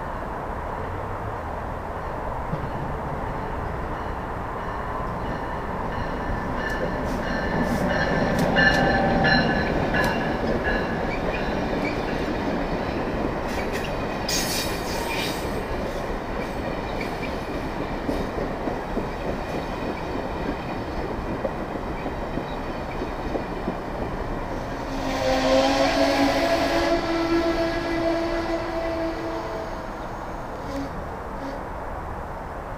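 An Amtrak train of stainless-steel Amfleet coaches rumbling along the track and passing close by, loudest about nine seconds in, with a short spell of sharp clicks in the middle. Near the end, a few seconds of steady high-pitched tones ring out over the rolling noise.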